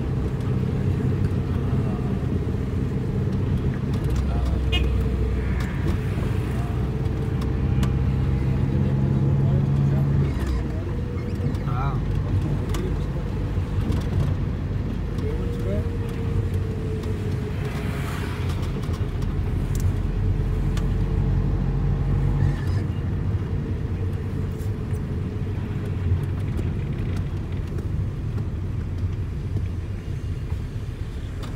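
Car running at low speed on a wet road, heard from inside the cabin: a steady low engine and road drone whose note shifts twice, about ten seconds in and again a little past twenty seconds.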